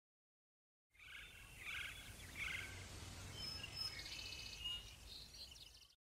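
Faint outdoor ambience with birds chirping over a low rumble. It cuts in suddenly about a second in and stops abruptly right at the end.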